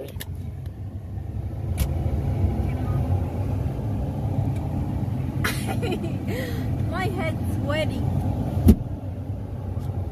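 Truck engine running with a steady low rumble heard inside the cab. Brief voices come in around the middle, and a single sharp click stands out near the end.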